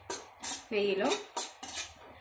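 A metal spoon scraping and stirring a dry, grainy mix of grated carrot, coconut powder and sugar around a pan, in quick repeated strokes about two or three a second.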